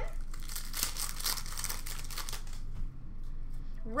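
A trading-card pack's wrapper being crinkled and torn open by hand: a dense crackle for the first two and a half seconds or so, then quieter.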